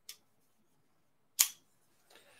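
Two short sharp clicks in a quiet room: a faint one at the very start and a much louder, snappy one about a second and a half in.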